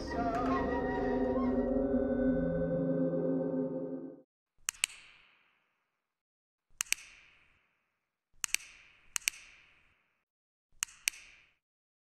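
A held chord of music that cuts off about four seconds in, followed by five sharp double clicks, each with a short hissing tail, spaced a second or two apart.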